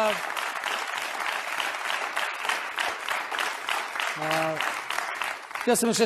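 Studio audience applauding steadily, a dense crackle of many hands clapping. A man's voice cuts in briefly about four seconds in, and speech resumes near the end.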